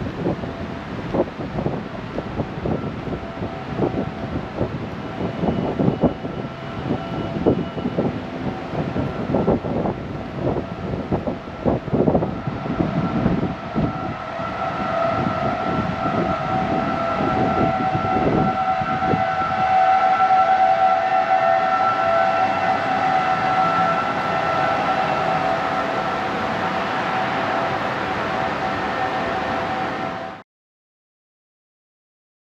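Wind buffeting the microphone in uneven gusts. About halfway through, a steady mechanical whine of several held tones swells up and stays loud.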